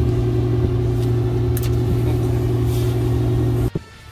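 A steady low mechanical hum with several steady tones in it. It cuts off suddenly with a knock near the end.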